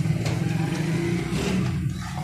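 Wooden spatula scraping and tapping against a non-stick frying pan as a paratha fries, with a few short clicks. A steady low hum runs underneath and is the loudest sound.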